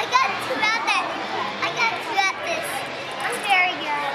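Children's voices chattering and calling out, high-pitched and overlapping.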